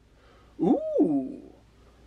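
A man's drawn-out "ooh" of delight, rising then falling in pitch, about half a second in; otherwise a quiet room.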